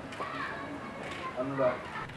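Voices talking in short phrases, with no distinct non-speech sound.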